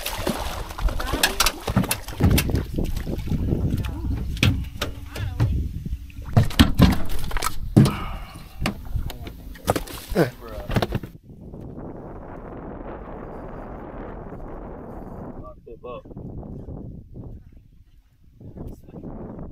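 Splashing and repeated knocks as a redfish is landed at the side of a boat and put in the fish box. About eleven seconds in the sound changes suddenly to a steady noise.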